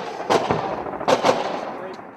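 Gunfire sound effect: a few irregularly spaced gunshots with a rolling echo between them, two close together in the middle, the whole fading out near the end.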